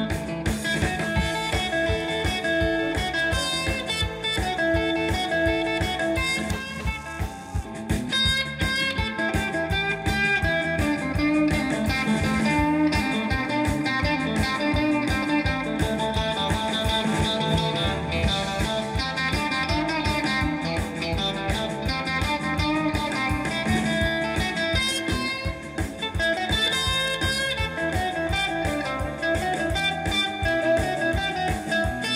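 Live blues band playing an instrumental tune on electric guitar, saxophone, bass guitar and drums, with a steady beat.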